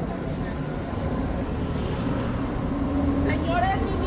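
City street traffic: a steady low rumble of passing cars, with a voice starting near the end.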